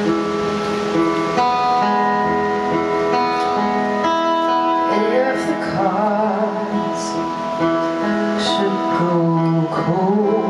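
An acoustic guitar playing a song intro with steady, ringing chords, joined by a voice singing from about halfway through.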